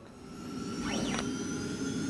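Electronic whoosh swelling up over the first second, with steady synthesized tones underneath and a quick swishing sweep about a second in: the opening of an animated logo sting.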